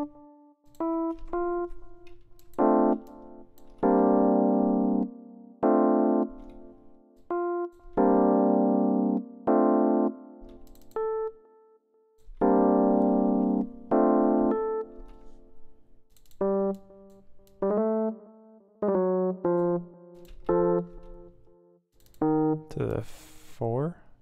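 Software electric piano playing jazzy minor-key chords from a MIDI clip, in short stop-start phrases: chords held for about a second with single notes and shorter stabs between them, as voicings are auditioned one by one. A brief swooping sound comes near the end.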